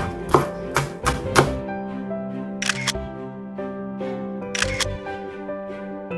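Chef's knife chopping thin green onion on a bamboo cutting board, about five quick chops in the first second and a half, over steady background music.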